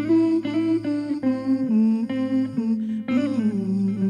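A woman humming a slow wordless melody, one note sliding into the next, over a low note held steady underneath.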